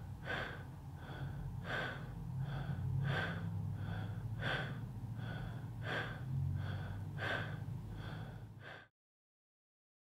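A man breathing rapidly through his mouth in connected breathwork: each inhale runs straight into the exhale without pause, a louder and a softer breath in turn, one in-and-out cycle about every second and a half. The breathing cuts off about nine seconds in.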